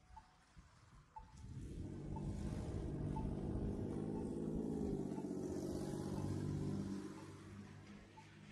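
A motor vehicle drives past on a wet street. Its engine hum and tyre hiss swell over about a second, hold for several seconds, then fade near the end. A short beep from a pedestrian crossing signal repeats about once a second throughout.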